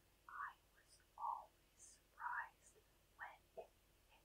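Faint whispered speech: a woman softly whispering a sentence in a few short syllables, against near silence.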